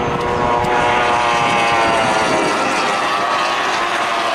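Racing tunnel boat's outboard engine running at high revs as it passes close by, a loud, steady buzzing note.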